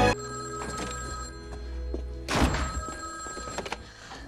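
A telephone ringing over quiet background music, with a brief loud burst of noise a little past halfway.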